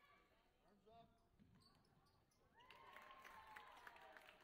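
Faint sounds of basketball play on a hardwood gym floor: sneakers squeaking and the ball bouncing, with voices. It grows louder in the last second or so, with a longer held squeak-like tone among quick clicks.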